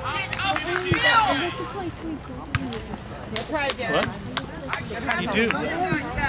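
Voices of spectators and players calling and shouting across an outdoor soccer field, with a few short, sharp knocks in the middle of the stretch.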